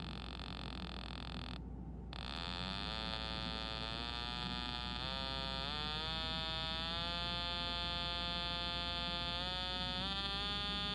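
Breadboard transistor-and-capacitor oscillator sounding a buzzy, dirty sawtooth tone. Its pitch climbs in small steps as the potentiometer is turned, from about two seconds in until the last few seconds, when it holds steady.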